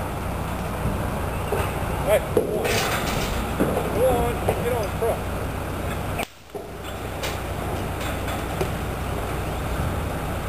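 Indistinct voices of people talking in the background over a steady low rumble. The sound drops out briefly about six seconds in.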